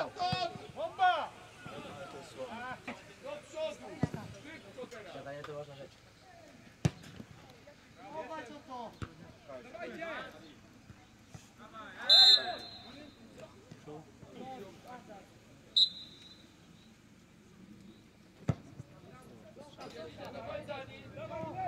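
Shouts from players and sideline on a football pitch, with a few sharp thuds of the ball being kicked. Two short blasts of a referee's whistle past the middle, the first the longer and louder.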